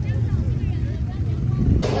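A steady low rumble of outdoor background noise, with faint voices in the background; near the end a woman's voice starts.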